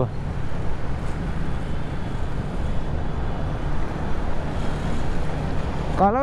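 A Honda motorcycle being ridden through city traffic: its engine running steadily under a rush of wind and road noise on the bike-mounted microphone.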